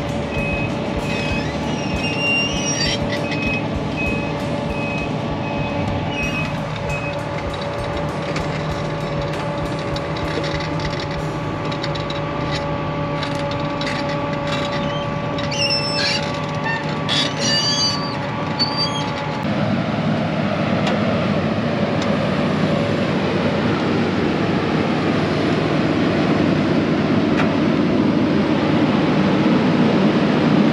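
Link-Belt 330 diesel excavator running under load as it lifts and carries a heavy oak trunk, with a steady hydraulic whine over the engine and scattered sharp clanks and knocks. A backup alarm beeps evenly for the first several seconds, and about two-thirds in the engine gets louder and fuller to the end.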